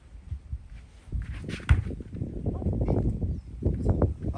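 A child popping up from lying to standing on a surfboard resting on cushions: his hands, knees and feet knock and shift on the board. The sharpest thump is a little under two seconds in.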